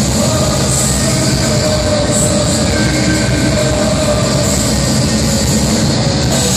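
Black metal band playing live: a loud, unbroken wall of distorted electric guitars and drums.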